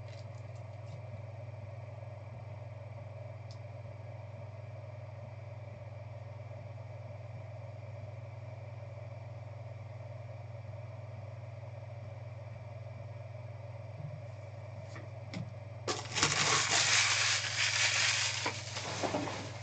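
A steady low electrical hum, then about two seconds before the end a loud burst of crinkling and crackling from trading-card packaging being handled or torn open.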